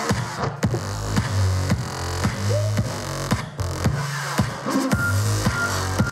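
Electronic dance music played live by a band on keyboards and drums: a steady beat over a deep, sustained bass line.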